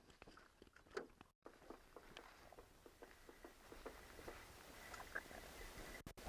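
Near silence, with faint scattered clicks and light knocks.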